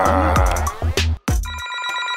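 Upbeat background music that cuts off about a second in, followed by a mobile phone ringing: an electronic ringtone of steady, evenly stacked tones.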